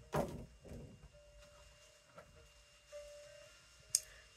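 Faint handling noise from a doll box with a plastic front: a short knock or rustle just after the start and a softer one a moment later, then mostly quiet.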